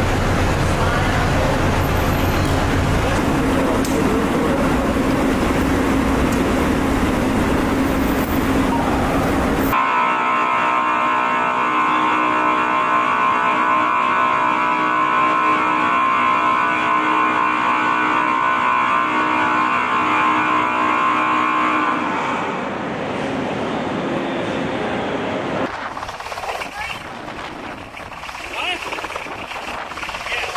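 Steady mechanical noise on a ship's deck. For about the first ten seconds it is a dense rumble with heavy low end. It then cuts abruptly to a droning hum with several steady tones, which drops in level a few seconds before the end.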